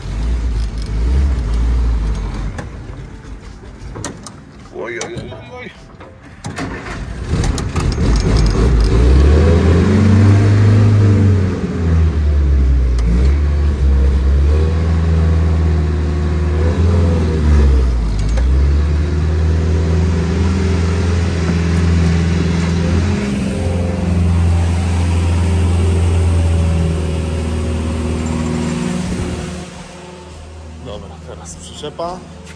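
A WWII Willys jeep's four-cylinder Go Devil flathead engine, freshly started on a little choke, running low and then pulling away, its pitch rising and falling several times as it is revved through the gears.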